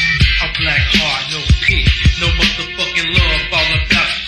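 Lo-fi 1990s Memphis underground rap track: a dark beat of sharp drum hits and heavy bass, with a male voice rapping over it.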